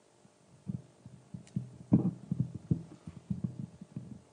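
Microphone handling noise: irregular dull low thumps and rubs, a few a second, as a handheld microphone is passed over and gripped.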